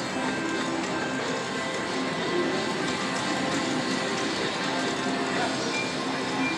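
Casino slot-floor din: electronic slot machine music and short chiming tones over steady background crowd chatter, while a three-reel slot machine spins its reels through a free-games bonus round.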